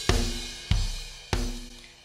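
EZDrummer 2 sampled drum kit playing back a MIDI groove: drum hits about every two-thirds of a second, each dying away, under cymbal and hi-hat wash.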